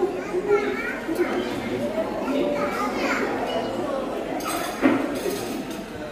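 Background chatter of people's voices, children's among them, with one short sharp knock about five seconds in.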